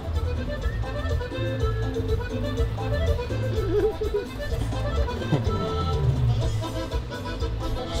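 Background music with a steady, pulsing bass line and held melodic notes.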